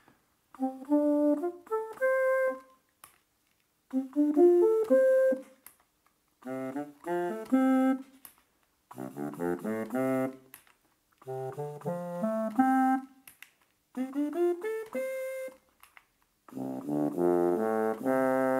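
Electronic ocarina built from a KontinuumLAB Instrument Kit (KLIK), breath-controlled through a balloon-membrane sensor, playing seven short phrases of quick notes with brief pauses between them. Its sampled sound changes between phrases as the different samples are cycled through, and the last phrase ends on a held note.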